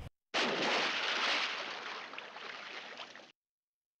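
A rush of noise with no pitch starts suddenly, fades steadily over about three seconds, then cuts off abruptly into silence.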